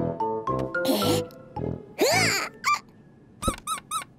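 Cartoon soundtrack: bouncy plucked-note children's music for about the first second, then a short swishing sound effect. Then come the cartoon bunny's high squeaky vocal noises: one rising-and-falling squeal about halfway and three quick squeaks near the end.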